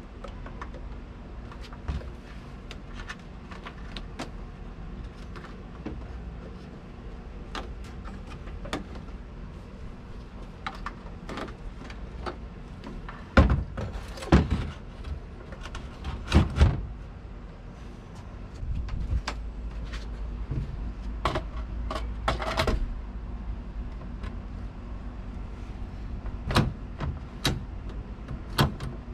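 Scattered knocks, clicks and rattles of a boat's throttle and shift control box being handled and pressed into a cutout in the center console, loudest around the middle and near the end, over a low steady background rumble.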